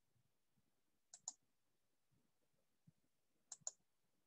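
Two pairs of sharp computer mouse clicks, about two and a half seconds apart, each pair two quick clicks close together, against near silence.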